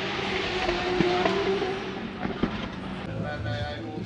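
Race car engines running in the background over a steady wash of outdoor noise, one engine rising briefly in pitch about a second in. Music begins near the end.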